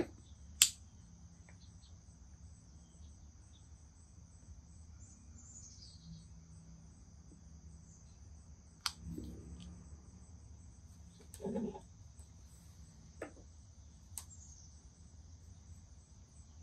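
Steady high chirring of insects, with a few sharp clicks of a lighter as a briar tobacco pipe is lit, the loudest click just after the start, and short soft puffs as the pipe is drawn on in the middle.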